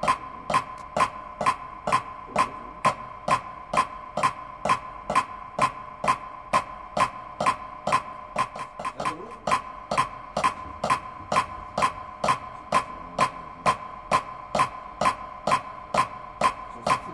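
Drumsticks playing a rubber practice pad to a steady, even click of about two beats a second, each beat sharp with a short ring.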